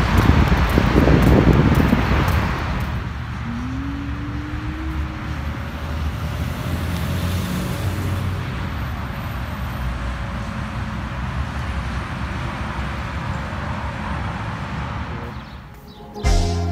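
Road traffic on a multi-lane road heard from the roadside, a steady rush of noise, louder for the first couple of seconds. A short rising engine-like tone about four seconds in.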